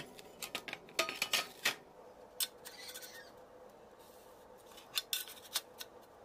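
Rusty steel plate handled on a wooden work board: a quick run of light clinks and taps in the first two seconds, then a few scattered taps over a faint steady hum.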